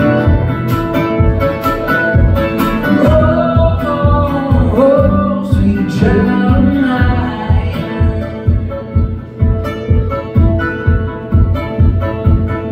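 A man singing live over an acoustic guitar he strums himself; after about seven seconds the voice drops out and the guitar strums on in a steady rhythm.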